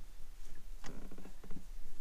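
A few faint clicks and knocks, one about a second in and two more shortly after, over a low steady rumble.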